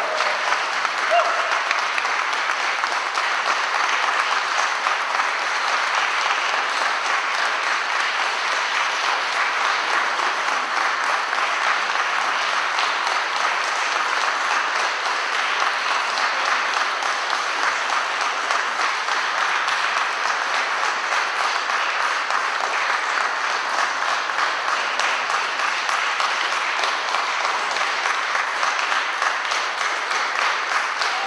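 Long, steady applause from an audience at the end of an opera duet.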